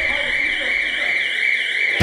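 Building fire alarm sounding: a steady high tone with a second tone warbling up and down about four times a second, signalling the fire evacuation.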